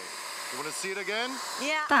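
Bissell PowerWash Lift-Off carpet washer running as it is pushed over a rug: a steady motor and suction hiss. A voice joins it in the second half.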